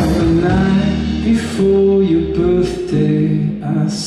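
Live music: an acoustic guitar picking a melodic line of held notes, with sparse light percussion.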